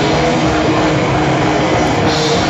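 Heavy metal band playing live at full volume: distorted electric guitars on held notes over drums, loud and continuous.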